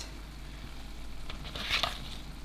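Pot of seafood-boil water boiling on the hob under a steady low hum, with a short splash near the end as a lobster tail is dropped into the water.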